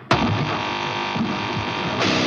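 Start of a hardcore punk track: after silence, distorted electric guitars and bass come in abruptly at full level as a sustained low drone with uneven low pulses underneath.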